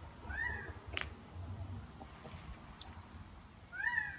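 Two short mewing calls that rise and fall, one just after the start and a louder one near the end, with a sharp click about a second in.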